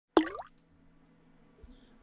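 A short synthetic 'plop' sound effect that rises quickly in pitch and lasts about a third of a second, followed by near silence with a faint low hum.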